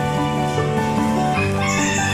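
Background music of sustained notes, with a rooster crowing near the end.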